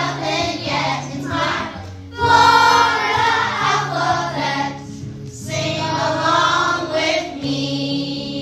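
A choir singing a sing-along song over instrumental backing, with sung phrases broken by short pauses about two and five seconds in.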